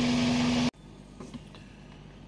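Toyota Previa 2.4-litre engine running steadily with a held hum, cut off abruptly less than a second in, leaving faint room tone.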